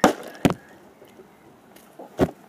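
Plastic water bottle landing on a hard surface with a knock right at the start, then knocking again about half a second later.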